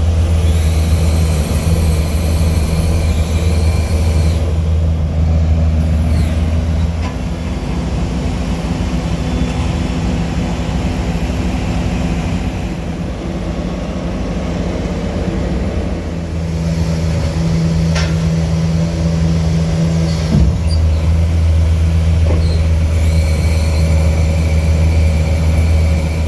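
Diesel engine of a Kato mobile crane running steadily, louder for the first several seconds and again over the last third of the stretch.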